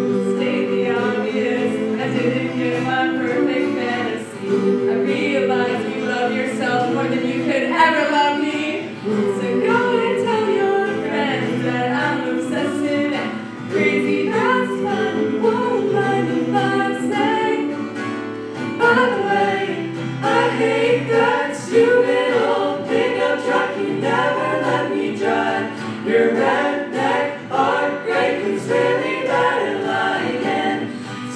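A small mixed group of boys' and girls' voices singing a song together in harmony, with an acoustic guitar accompanying underneath.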